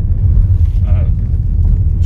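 Low, steady driving rumble inside the cabin of a Renault Espace 5 1.6 dCi diesel MPV rolling over a rough dirt road.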